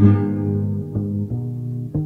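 Instrumental passage of a Christian song: plucked guitar notes over a bass line, with a new note or chord every third to half second and no singing.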